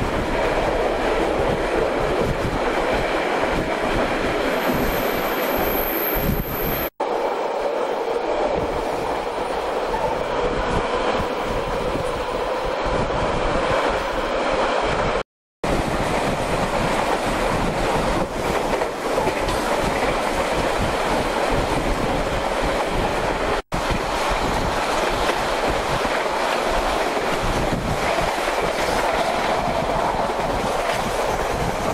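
Passenger train running along the track: a steady rumble of wheels on rails with a faint steady tone under it. Three very short drop-outs break it, about 7, 15 and 24 seconds in.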